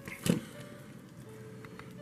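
Faint background music with steady held notes, broken about a third of a second in by a single knock as the plastic dinosaur toy figure is handled.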